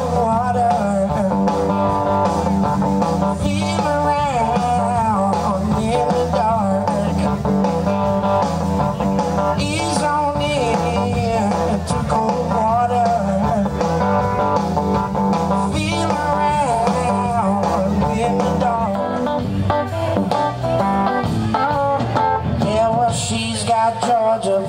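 Live blues band playing: electric guitar over bass guitar and drums, with a guitar line of bending notes and a steady beat.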